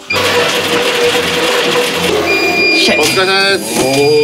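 Stationary exercise bike's flywheel whirring loudly as a rider sprints hard, starting suddenly; a steady high whine joins a little over two seconds in.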